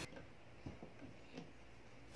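A few faint plastic clicks as a trigger-spray head is set onto a plastic spray bottle and screwed down.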